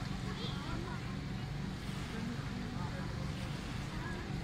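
Seaside ambience: a steady low rumble with faint voices of people talking in the distance.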